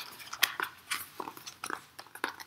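Hardcover picture book being lifted and handled, giving an irregular string of small clicks and rustles from the cover and pages.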